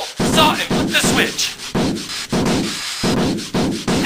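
Rhythmic rasping of a saw cutting wood, repeated in even strokes about two to three times a second.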